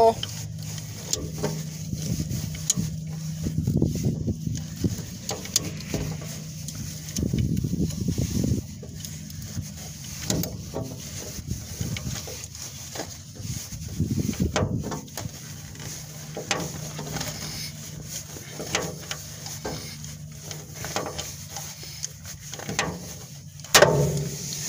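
Hand pop rivet gun squeezed over and over, its handles clicking and creaking as it draws a rivet into an aluminum strip on a steel trailer wall; near the end a sharp snap as the mandrel breaks off and the rivet sets. A steady low hum runs underneath.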